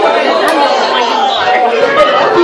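Several voices talking over one another in a hall: congregation chatter and reactions, none of it clear enough to make out as words.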